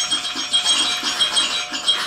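A short instrumental music sting with steady high ringing tones over a dense busy texture. It starts suddenly and stops at the end.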